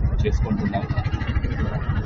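Low, steady rumble of a road vehicle passing close by, with faint voices in the background.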